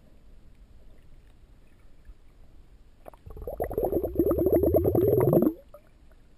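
Underwater burbling of air bubbles from a diver breathing out: a rapid fluttering rumble of about two seconds that starts about three seconds in and stops abruptly.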